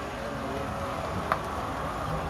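Low engine and tyre noise of a Chevrolet car rolling slowly past close by, with one sharp click about a second and a half in.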